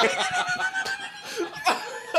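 Several men laughing hard together.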